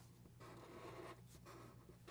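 Faint scratching of Sharpie marker tips stroking short lines on paper.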